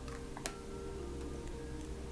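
Soft, slow spa music with long held notes, over which a glass dropper clicks sharply against the neck of an amber glass bottle about half a second in, followed by a few fainter ticks.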